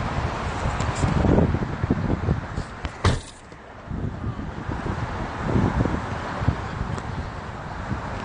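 Highway traffic rumble and wind buffeting on a phone microphone held out of a vehicle window. About three seconds in there is a sharp handling knock, followed by a brief quieter spell.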